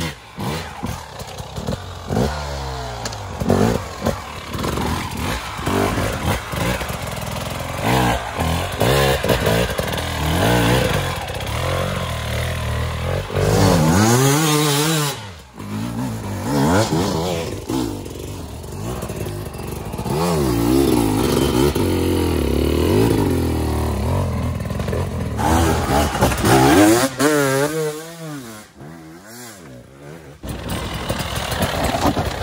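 Hard enduro dirt bikes climbing a steep, muddy wooded slope. Their engines rev hard and drop off again and again as the riders work the throttle for grip, with the pitch rising and falling all through. Several bikes pass in turn.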